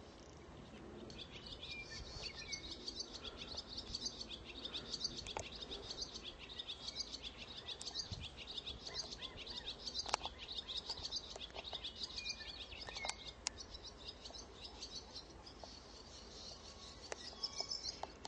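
Birds chirping continuously in quick, high-pitched notes, with a single sharp click about ten seconds in.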